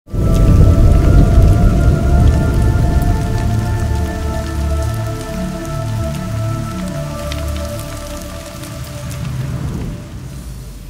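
Cinematic logo-reveal sting: a sudden loud low rumbling hit with held droning tones on top and faint crackles, fading slowly over the whole span.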